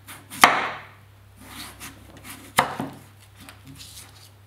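Chef's knife slicing through peeled daikon radish and hitting a wooden cutting board: two loud cuts about two seconds apart, with softer scraping slicing sounds between them.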